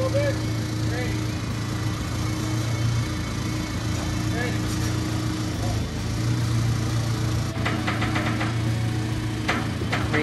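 JCB telehandler's diesel engine running at a steady speed with a low hum while it holds a lifted wall frame.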